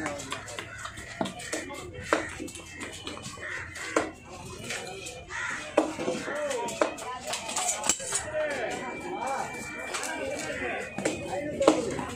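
Several people talking in the background, with a few sharp knocks of a heavy fish-cutting knife on a wooden chopping block scattered through, the loudest near the end.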